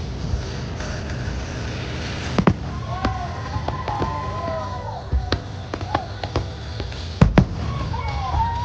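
Fireworks shells launching and bursting in sharp bangs, a few scattered through the middle and the loudest pair near the end. Under them plays the show's music soundtrack through loudspeakers, with a sung melody.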